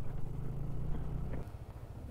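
Yamaha NMAX scooter's single-cylinder engine running slowly at low speed. The hum cuts off about one and a half seconds in.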